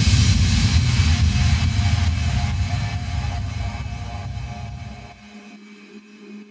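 Trance track in a breakdown: the beat has stopped and a loud rumbling noise sweep fades away over about five seconds, its bass cutting out near the end and leaving a quiet held synth note.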